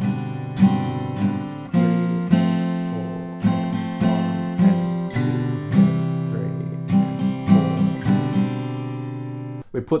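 Taylor AD22e acoustic guitar strumming the second line of a chord progression (Gsus4, Fsus4, F, Fsus2, C/B, C): single down-strums, each chord left to ring. Near the end comes a quicker run of down-up strums, and then the last chord dies away.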